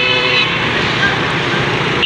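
Steady road and wind noise from riding through traffic, with a vehicle horn sounding briefly at the start.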